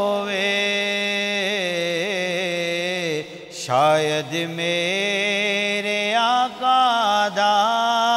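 A naat being recited: a solo male voice singing long, ornamented held notes, with a pause for breath about three and a half seconds in.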